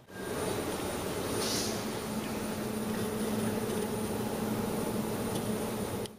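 A steady hiss with a low hum underneath, starting and stopping abruptly.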